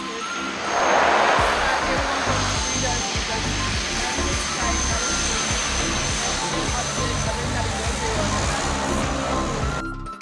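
A twin-engine propeller plane's engines running loudly as it rolls along the runway. The noise swells about a second in and carries a steady high whine. Music plays underneath and cuts off suddenly at the end.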